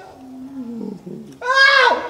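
A person's voice: a low groan falling in pitch, then a loud, high yell that starts about a second and a half in and is the loudest sound.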